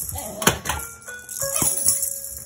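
A toy electronic keyboard sounding held, beeping notes that jump in pitch from one to the next, mixed with the jingling and rattling of a toy tambourine and shakers and a few sharp knocks.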